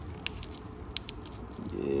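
A few faint, sharp crinkles and clicks from a torn-open foil sachet of adhesion promoter being handled in the fingers, the clearest about a quarter second in and around one second in, over a low steady hum.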